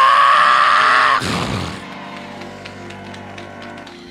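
A man's voice through a microphone singing one long held note that rises in pitch and breaks off about a second in. Softer sustained musical tones with scattered hand claps follow.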